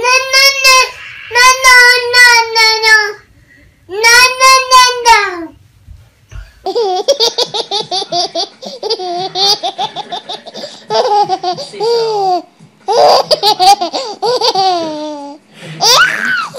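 A toddler's three long, high-pitched wails over the first five seconds. After a short gap, a baby laughing hard in quick repeated bursts.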